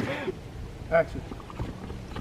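A voice trails off, then one short 'yeah' about a second in, over a low steady outdoor rumble.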